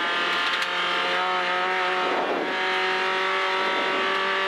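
Renault Clio V1600 rally car's engine running flat out at steady high revs, heard from inside the cabin over a hiss of road noise.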